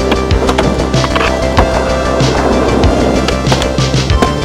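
Skateboard on concrete, with wheels rolling and the wooden board clacking, over synth music with a steady beat.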